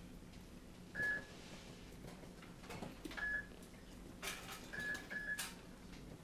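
Short electronic beeps from a bedside medical monitor, four times at uneven intervals, all at the same high pitch. A few clicks and rustles of equipment being handled come between them.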